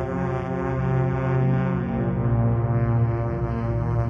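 Background music: a low, sustained drone made of layered steady tones that shift slowly in pitch, in the manner of a dark ambient soundtrack.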